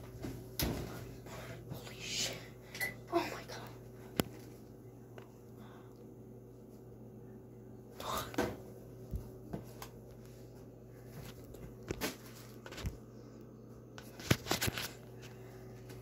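Scattered light knocks and clatters from handling things in a kitchen, with a few soft vocal sounds in the first few seconds, over a steady low hum.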